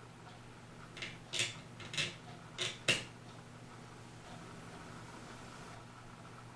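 Small clicks and scrapes of fingers working an anniversary clock's hour hand off its shaft, five short ones in about two seconds, over a faint steady hum.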